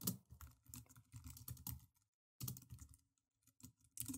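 Faint computer keyboard typing: a quick run of keystrokes, a short pause, then a few more keystrokes and a single key near the end.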